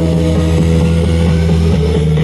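Loud DJ music over a big sound system, here a held deep bass note under a steady synth tone, with little drum beat.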